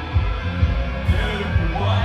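Live band playing: a heavy, bass-heavy pulse of kick drum and bass about three times a second under held keyboard and guitar tones, with a short run of higher notes near the end.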